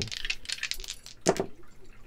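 Astrology dice tossed onto a table: a few light clicks as they land and roll, then one louder knock a little over a second in as they settle.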